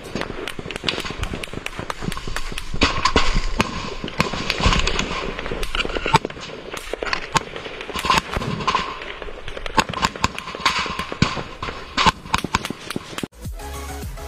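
Rifle gunfire in a firefight: many sharp shots in fast, irregular runs, some louder and closer than others. About a second before the end it cuts off suddenly into electronic music.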